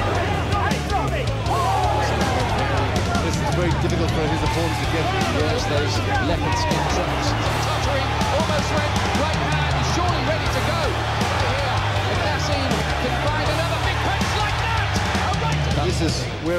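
Background music with a steady bass line and beat, over the noise of a crowd's many voices.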